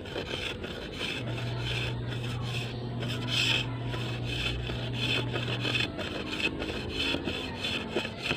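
A knife blade shaving a thin bamboo strip, in repeated scraping strokes about two or three a second, as the strip is thinned and tapered to a fine point for a kite's curved frame.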